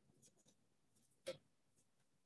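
Near silence, with one brief faint sound a little over a second in.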